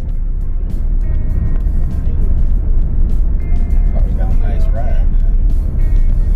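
Steady low road rumble of a car heard from inside the cabin while driving on a wet highway, with music and a voice over it, the voice clearest about four to five seconds in.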